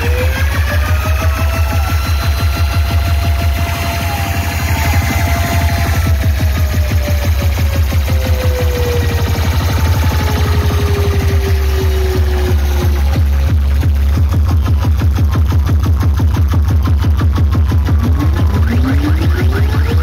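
Loud electronic dance music played through a DJ sound system's speaker stack: heavy bass under a fast pulsing beat, with sliding synth tones that fall slowly through the first half and sweep upward again near the end.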